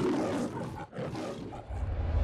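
The MGM logo's lion roar: two roars, the first about a second long, then a brief break and a second, shorter roar.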